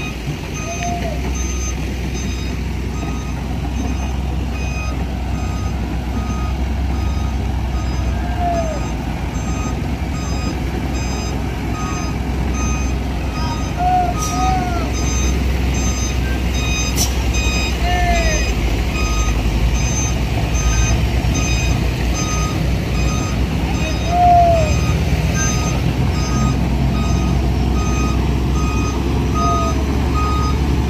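A heavy vehicle's reversing alarm beeping repeatedly at an even pace over the low, steady rumble of a heavy truck engine. A few short rising-and-falling calls sound now and then over it.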